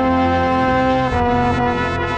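Marching band brass playing held chords, with a trombone very loud and close; the chord changes about a second in.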